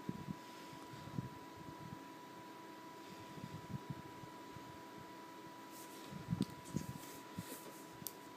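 Quiet room tone with a faint steady high whine, and a few soft taps and rustles from a shrink-wrapped Blu-ray steelbook case being handled and turned over, with a small cluster of them between six and seven seconds in.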